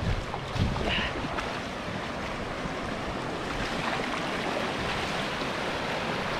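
Shallow mountain river rapids rushing over boulders: a steady roar of water, with a couple of low thumps in the first second.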